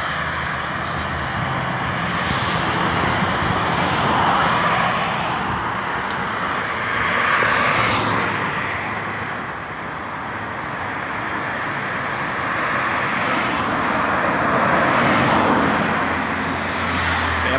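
Highway traffic noise: vehicles passing on the road, the tyre and engine noise swelling and fading three times.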